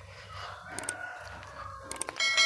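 A rooster crowing faintly: one drawn-out call.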